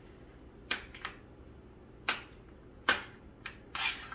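Knife chopping through peanut butter cups, the blade knocking on a cutting board: a handful of sharp taps about a second apart, the last one a little longer.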